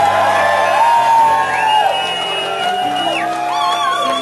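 Live band starting a slow song: long held melody notes over sustained bass notes that change about every second, with a shouted "yeah" at the start and whoops from the audience.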